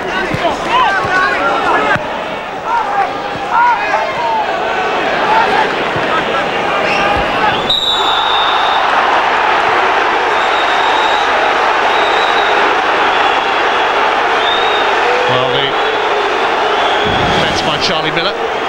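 Football stadium crowd: scattered shouts from the stands at first, then from about eight seconds a loud, sustained crowd noise that keeps up.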